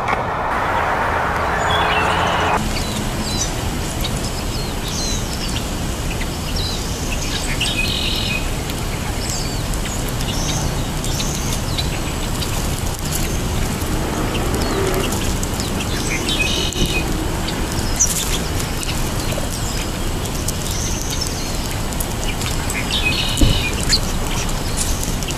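Small songbirds chirping and calling around a seed pile, with short call notes scattered throughout and a similar call phrase coming back about every eight seconds, over a steady low background noise.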